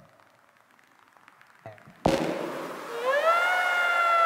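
Near silence for the first two seconds, then a sudden loud rushing noise as the animated mine cart takes off down its track. About a second later a high-pitched tone rises and then holds over the noise.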